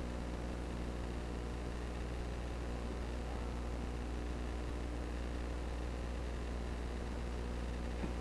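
Steady electrical hum with an even hiss over it, unchanging throughout: the background tone of the recording, with no other sound standing out.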